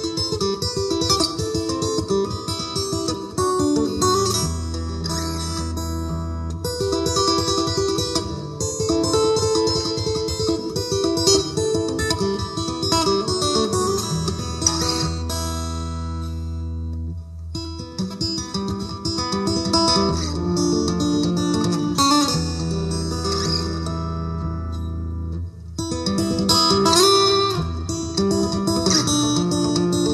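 Acoustic guitar instrumental: a picked melody over low notes that ring on for several seconds, with short breaks just past halfway and again later.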